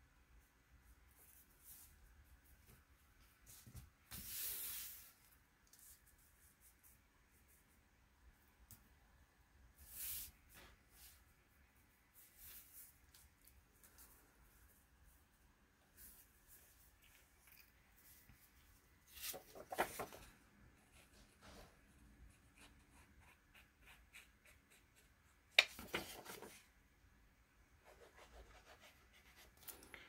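Sheets of paper and cardstock being slid, smoothed and handled on a cutting mat: faint, scattered rustles and rubs, with a short cluster of clicks near the two-thirds mark and a sharper click a few seconds later.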